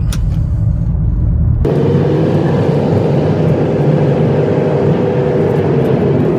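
Inside a moving car's cabin: steady engine and road noise. Just under two seconds in it changes abruptly from a deep rumble to a louder, fuller rushing sound.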